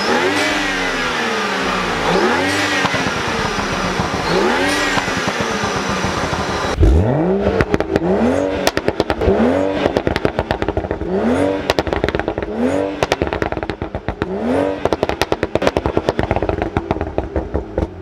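BMW 335i's N55 turbocharged 3.0-litre straight-six, fitted with an MST Performance intake, revved in repeated short blips while parked. The first few blips come about two seconds apart. About seven seconds in, the sound cuts to the tailpipes, where quicker blips come about every second and a half with sharp crackling between them.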